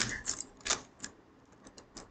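A few short, sharp clicks at uneven intervals, the loudest a little under a second in, followed by fainter ticks.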